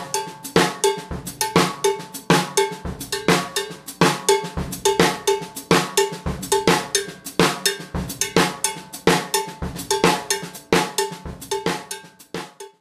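Drum kit playing a linear groove led by a mounted cowbell: cowbell, kick, snare and hi-hat strokes each fall on their own beat in an even, repeating pattern, with the hi-hats closing on the 'e' of 1 and the 'a' of 2.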